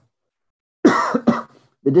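Total silence for nearly a second, then a man's short cough of about half a second, in two quick pulses. Speech resumes right after.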